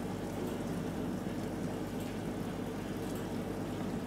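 Steady bubbling and stirring of aquarium water from air stones fed through airline tubing, with a low steady hum underneath.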